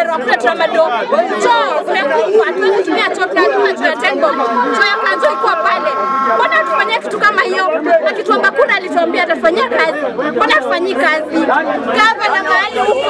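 A woman speaking loudly and emphatically over the chatter of a crowd around her. A steady held tone of about three seconds sounds near the middle.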